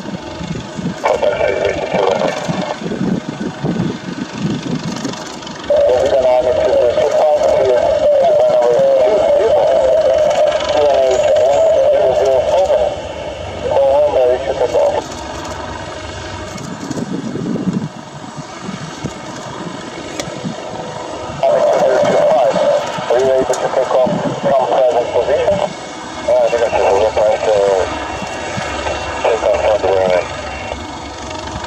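Helibras HM-1 Panther helicopter running on the ground as it taxis: steady turbine and rotor noise with a loud, wavering mid-pitched tone that swells in and out several times.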